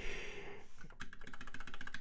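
Computer keyboard keys being pressed, a run of light, quick taps in the second half, after a soft breathy exhale at the start.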